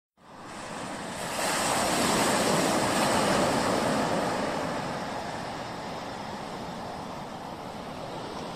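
Ocean surf: a wave rushing in, swelling to its loudest about two seconds in and then slowly washing out, an even hiss with no notes.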